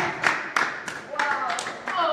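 A small group clapping hands in an uneven patter, with voices calling out over the claps.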